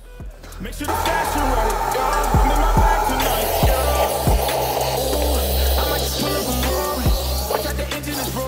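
Hip hop style background music with a steady beat and deep bass hits that drop in pitch, swelling in over the first second.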